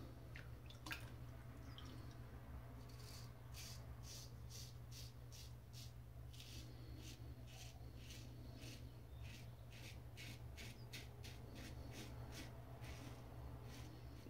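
Faint, short scraping strokes of a razor cutting through lathered stubble on the cheek, about two a second, in a long run of repeated passes.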